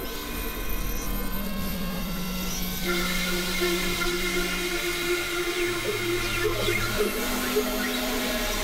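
Experimental synthesizer drone music: several sustained electronic tones held over a hissing noise bed. The chord shifts to a new set of held notes about three seconds in, and a lower note sounds briefly past the middle.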